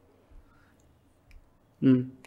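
A brief pause in a man's speech: near quiet with two faint clicks about a second apart, then his voice resumes near the end.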